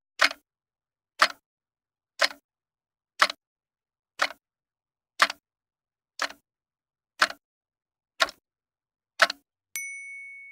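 Clock-tick sound effect of a ten-second countdown timer: ten sharp ticks, one a second, then a ringing ding just before the end as time runs out.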